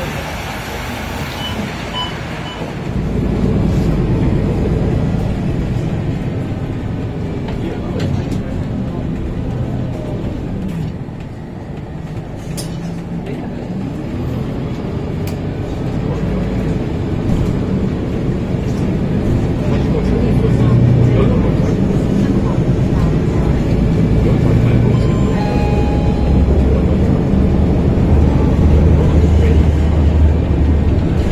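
MAN D2066 straight-six diesel engine of a MAN NL323F Lion's City bus, heard from inside the passenger cabin as the bus drives off. The engine note rises sharply about three seconds in and builds again in the second half as the bus gathers speed.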